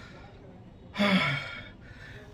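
A single short, breathy "haan" from a man about a second in, half word and half gasp, against low room tone.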